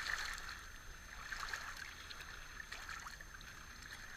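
Shallow seawater trickling and lapping among shoreline rocks, a low steady wash with a few small clicks.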